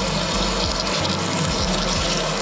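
Pork belly pieces sizzling in hot toasted sesame oil in a small pot, a steady hiss of frying as the meat starts to brown.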